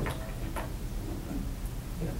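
Room tone in a meeting room: a steady low hum with a few faint, short clicks.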